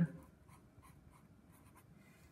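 Felt-tip marker writing on paper: a series of faint, short scratching strokes.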